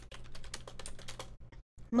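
Computer keyboard typing: quick, irregular keystroke clicks, with a short break near the end.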